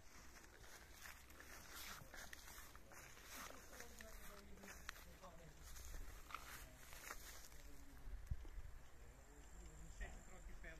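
Near silence outdoors: faint scattered rustles and a few soft, faint murmured voices.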